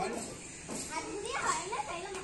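Children's voices calling out at play, faint and distant, around the middle of the moment.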